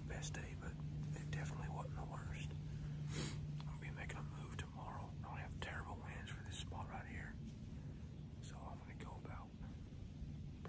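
A man whispering in short hushed phrases, with a steady low hum underneath.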